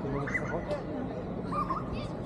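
Passers-by talking on a city street over a steady low traffic hum. Two short high-pitched calls stand out, one about a third of a second in and one near the end.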